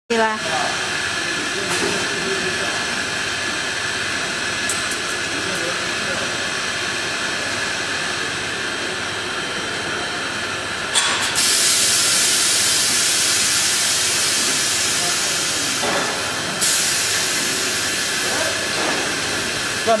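Compound bubble-film machine running steadily, rollers and drive turning. A loud hiss comes in suddenly about halfway through, stops after about five seconds, then returns a little weaker near the end.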